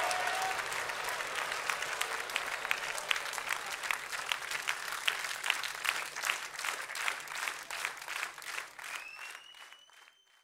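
Concert audience applauding, falling into rhythmic clapping about three beats a second that fades out near the end, with a faint high whistle-like tone rising as it dies away.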